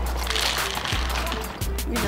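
Background music with a steady bass beat, with the dry rattle and rustle of cereal being poured into a bowl.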